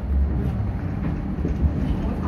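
Light rail car running, heard from inside the car as a steady low rumble with a broad hum of wheel and track noise.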